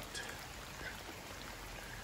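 Rain falling on a swimming pool's water and concrete deck: a steady, even hiss of drops.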